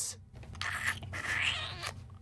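Cartoon kissing sound effect: a drawn-out smooch that rises in pitch near the end.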